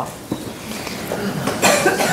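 Faint shuffling and small knocks as people sit back down at a meeting table, then a short, loud sound near the end.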